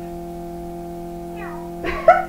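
Cartoon soundtrack playing from a TV over a steady hum, ending in a sudden loud, high-pitched cry near the end.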